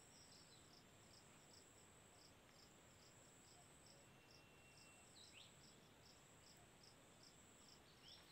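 Faint insects chirping in the background: a steady high buzz with a pulsed chirp repeating two or three times a second. A brief falling chirp comes a little after five seconds in.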